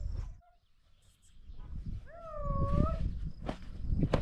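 A cat meowing once: a single drawn-out meow of about a second, starting about two seconds in and rising in pitch at its end, over a low background rumble.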